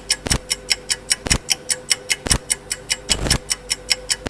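Countdown-timer ticking sound effect: quick, even ticks about five a second, with a heavier thump once a second, over a faint steady tone.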